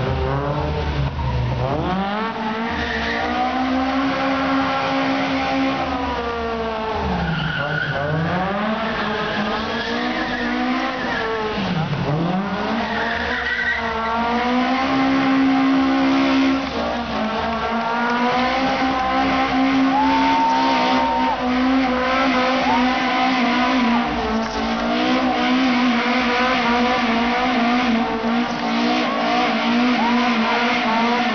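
Toyota AE86's engine revving hard while drifting. The revs drop and climb steeply three times, then stay held high with a slight waver through the second half. Tyres squeal and skid throughout.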